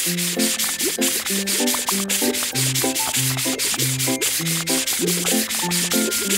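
Cartoon rubbing sound effect, a rasping scrub repeating about five strokes a second, over upbeat children's background music.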